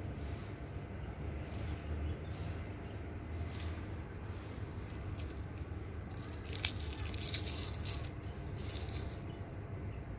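Dry, papery hollyhock seed pod being handled and crumbled between fingers, giving crisp crackling in short bursts. The crackling is densest and loudest from about six and a half to nine seconds in, over a steady low rumble.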